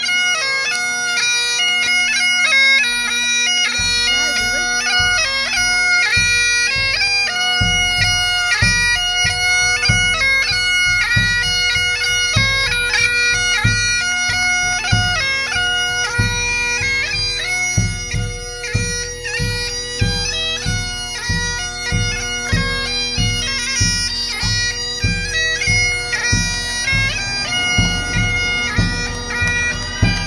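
A Highland pipe band playing: bagpipes sounding a tune over their steady drones, with a bass drum beat coming in about four seconds in and keeping a steady beat from about eight seconds on.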